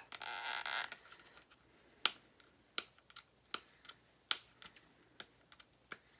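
Fingers and nails working at the packaging of a makeup palette to open it by hand: a short crinkly rustle, then a series of sharp clicks and ticks spaced irregularly about a second apart.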